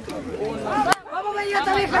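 Several people chattering, with one sharp click just before a second in. Near the end a man begins calling out "vamos".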